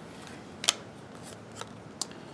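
Cardboard trading cards being slid and flipped in the hands: a few short sharp snaps and rustles of the card edges, the loudest about two-thirds of a second in.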